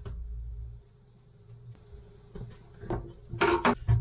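Small clicks and scrapes of a razor blade cutting away rubber on a plastic bilge pump housing, with a louder, brief rustle of handling near the end.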